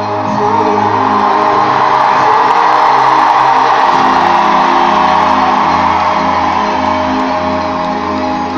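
Live pop song played over an arena's sound system, held keyboard chords with little singing, under a crowd cheering and shouting that swells about two to four seconds in, heard from the seats of a large arena.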